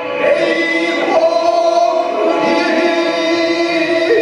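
A group of men chanting Japanese poetry (gin'ei, shigin) in unison, drawing out long held notes with a short break near the start.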